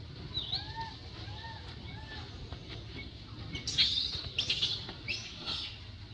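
Animal calls: three short calls that rise and fall in pitch in the first two seconds, then a run of four louder, harsher, high chirps from a little under four seconds in.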